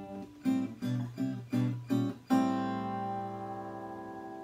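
Handmade all-solid-wood acoustic guitar with a cedar top being strummed: about five short chord strokes, then a chord struck about halfway through and left to ring, slowly fading.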